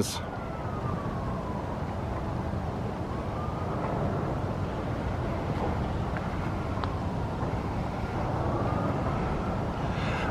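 Faint emergency-vehicle siren in a slow wail, its pitch sliding down and back up over a few seconds at a time, above a steady low background rumble.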